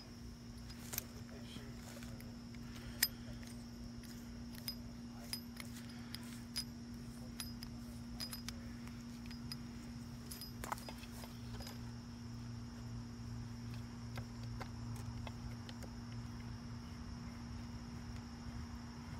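Scattered light clicks and taps of a hose end's metal coupling being handled against a plastic hose reel's inlet fitting. The clicks are loudest about three seconds in and thin out after about twelve seconds. A steady low hum and a steady high whine run underneath.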